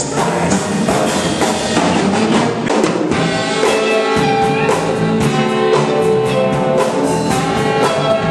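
Live swing band with a horn section playing an instrumental passage, drums keeping a steady beat; from about halfway in, the band holds long sustained notes.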